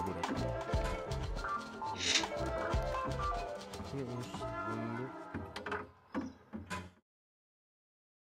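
Experimental electronic music from a modular-synthesis patch, heard over a video call: layered pitched tones shot through with clicks and metallic, clanking noises. It thins out about five and a half seconds in, leaving a few short blips before cutting to silence near the end.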